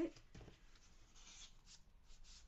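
Card stock rustling and scraping softly as a paper bookmark is slid into the pocket of a handmade card, with a light tap about half a second in.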